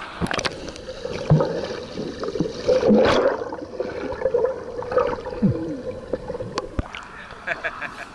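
Pool water sloshing, gurgling and splashing right at a camera that is dipped in and out of the water, as a child swims close by.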